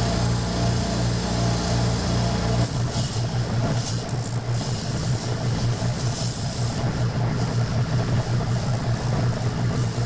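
Reciprocating spindle sander running with a steady motor hum while its sanding drum works the inside edge of a wood ring, with a hiss of abrasive on wood. About three seconds in, the hum turns into a fast pulsing as the footage switches to twice actual speed.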